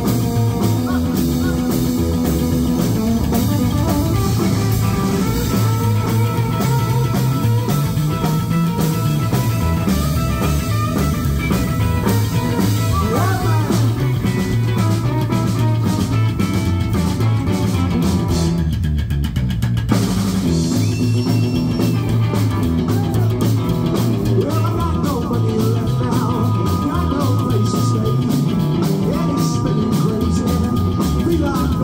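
Rockabilly band playing an instrumental break live: electric guitar lead with bent notes over a steady bass line and drums.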